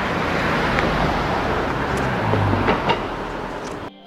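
Street traffic noise: a steady rush of passing cars with a few light clicks, cutting off abruptly near the end.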